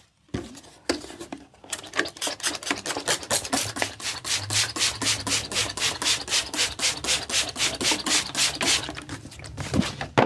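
Plastic trigger spray bottle squeezed rapidly, spraying mist in quick spurts about five a second; the spurts come sparser at first and run steadily from about two seconds in, stopping near the end.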